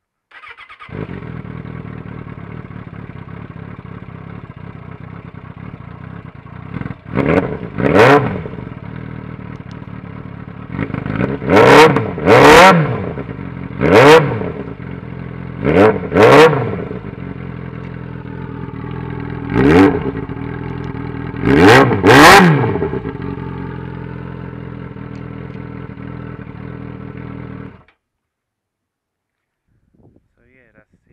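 Suzuki Bandit 600 inline-four engine running at idle through a Danmoto XG-1 aftermarket exhaust, loud, with about ten sharp throttle blips, several in quick pairs, each rev climbing and dropping straight back to idle. The sound cuts off suddenly near the end.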